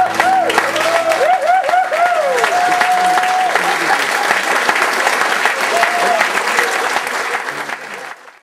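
Audience applauding and cheering at the end of a song, with rising-and-falling calls over the clapping in the first few seconds, while the last acoustic guitar chord rings out briefly at the start. The applause fades out near the end.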